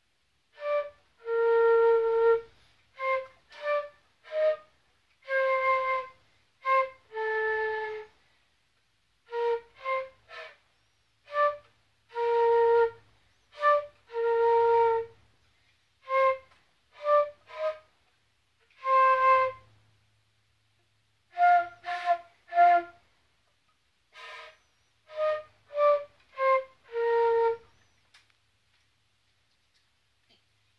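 A concert flute playing a simple melody: a run of separate notes, short ones mixed with held ones of about a second, in phrases with short breaks between them.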